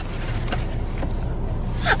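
A paper mailing envelope being torn open and rustled by hand, a steady crackling tear, ending with a short gasped "ah".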